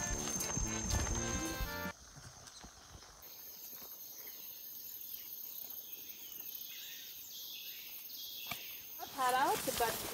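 Background music with a beat, cutting off abruptly about two seconds in. Quiet forest ambience follows, with a thin steady high whine and a few faint calls, until a voice starts speaking near the end.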